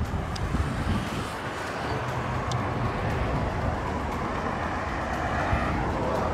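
Road traffic on a wide city road: a steady rushing of tyres and engines that builds gradually over the few seconds.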